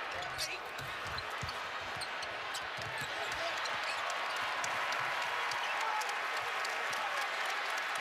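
Arena crowd noise at a basketball game, with a basketball being dribbled on the hardwood court.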